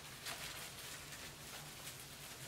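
Faint crinkling and rustling of cling film as it is gently peeled off a card coated in wet paint.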